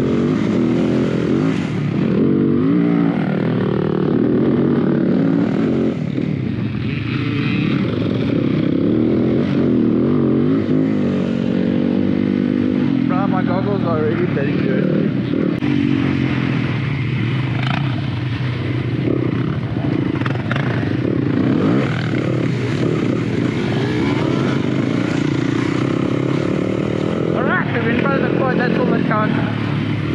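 A Yamaha dirt bike's engine is ridden hard over rough ground, with the revs rising and falling continuously as the throttle is worked.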